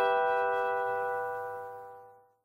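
The final strummed acoustic guitar chord of a folk-blues song ringing out and fading away.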